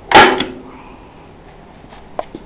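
A single loud bang on the plywood nesting box, a sharp knock with a short ringing fade.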